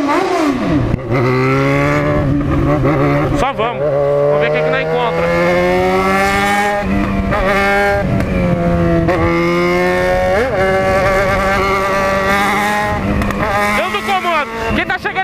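Yamaha XJ6's inline-four engine running under way as the motorcycle rides. Its pitch climbs gradually, drops back a few times as the gears change, then climbs again.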